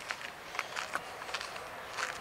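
Low outdoor background noise with a few faint, irregular ticks and crunches of footsteps on a stony dirt path.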